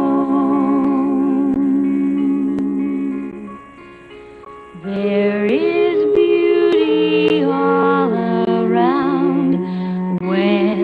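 Female vocal trio singing a hymn in close harmony: a held chord that fades about three and a half seconds in, a short lull, then the voices come back in about five seconds in, singing with vibrato.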